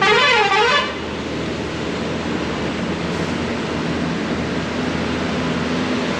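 A truck's musical horn sounds one short warbling call that wavers up and down in pitch for under a second. Then the truck's diesel engine runs steadily.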